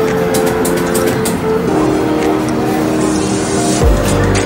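Arcade din: electronic tunes and sound effects from the game machines, held notes changing pitch every second or so, over a steady clatter of clicks and crowd noise.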